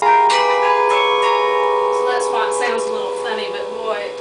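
Carillon bells played from the baton keyboard. A loud chord is struck at once, and a few more notes follow in the next second or two. The bell tones ring on and overlap as they slowly fade.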